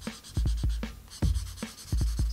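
Broad-tip felt marker scribbling on paper in quick back-and-forth strokes to colour in an area. A low thump sounds underneath about every 0.8 s.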